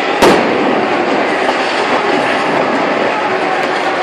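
A single sharp explosive bang just after the start, over a steady loud din of noise from the burning barricade.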